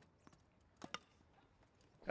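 Near silence, with two faint sharp knocks close together about a second in, typical of a tennis ball being struck or bouncing during a wheelchair tennis rally.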